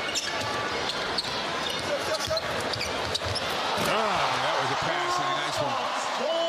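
Basketball game sound: a ball bouncing on the court with short sharp strikes, over a steady arena crowd noise. A voice comes in about four seconds in.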